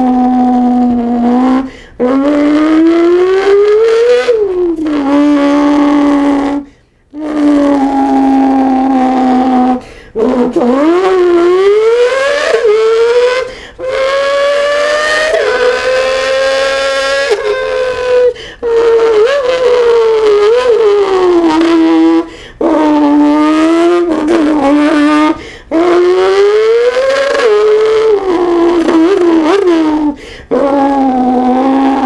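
A man imitating a Formula 1 car's V12 engine with his mouth: a loud buzzing vocal tone that climbs in pitch and drops back again and again, like an engine revving up through the gears. Short pauses break it every few seconds.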